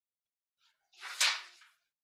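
A single short rustle of a sheet of paper being handled, about a second in.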